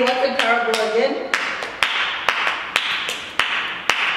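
A voice for about the first second, then hands clapping in a steady beat, about two claps a second, over a hiss.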